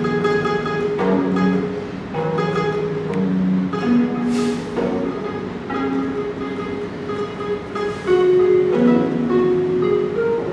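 A small zither on the player's lap, plucked note by note in short phrases, each note ringing and fading. Two brief swishing noises come through, about four seconds in and again about eight seconds in.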